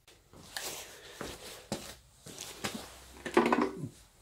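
A few faint knocks and rustles of handling, with a short pitched sound about three and a half seconds in.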